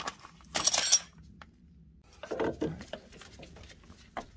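Steel tools and suspension hardware clinking together: a sharp ringing clink at the start, a short jangling metallic rattle about half a second in, then quieter handling noises.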